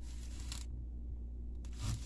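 A plastic apple corer pushed down through a raw apple, giving a faint crisp scraping in the first half second and again, building, near the end.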